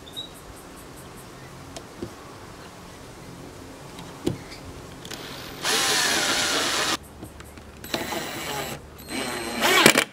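Cordless drill driving a screw through a metal drawer slide into plywood: one steady run of a little over a second starting about halfway through, after a few small clicks. Near the end come knocks of the tools being handled and short bursts of a driver starting on the next screw.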